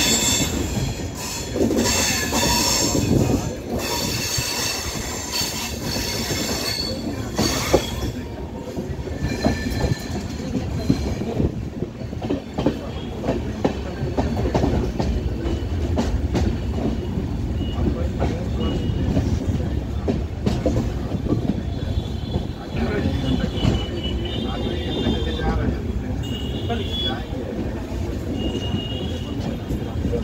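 Passenger train running, heard from inside the coach: a steady rumble of wheels on rail with short knocks over the rail joints and points. High wheel squeal sounds over the first several seconds and again in short spells near the end.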